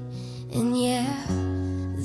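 Live acoustic country music: acoustic guitar strummed under a dobro played with a slide, a sliding note coming in about half a second in.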